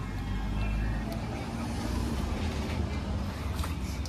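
Yamaha R15 V4 motorcycle's single-cylinder engine running steadily, a constant low rumble.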